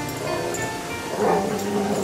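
Dogs play-fighting, with two drawn-out, pitched grumbling vocalisations: one shortly after the start and one past the middle.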